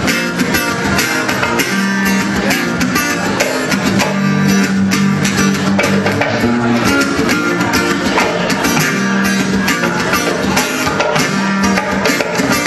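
Live band playing an instrumental passage through PA speakers: guitar strummed in a steady, even rhythm over sustained bass notes.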